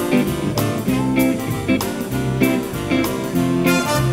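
Instrumental dance-band music with a steady, upbeat rhythm.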